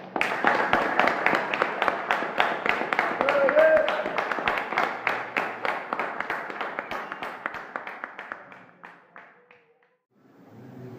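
Audience applauding at the end of a song: the clapping starts suddenly, then thins out and dies away near the end. A short voice calls out about three and a half seconds in.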